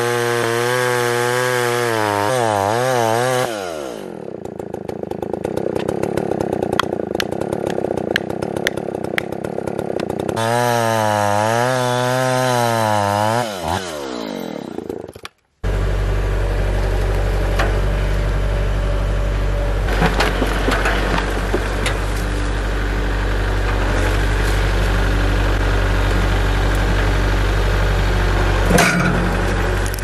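Husqvarna L77 two-stroke chainsaw cutting into a white oak log, its engine pitch wavering up and down under load. About fifteen seconds in, it gives way abruptly to a Kubota L4701 tractor's diesel engine running steadily, with a few sharp knocks.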